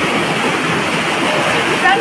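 Fast-flowing floodwater rushing down a street, a steady, unbroken rush of water. A voice starts near the end.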